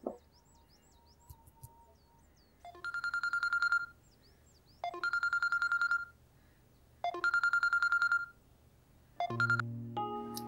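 Mobile phone ringing with a rapid trilling ringtone: three rings of just over a second each, about two seconds apart, and a fourth ring cut short near the end as the call is answered.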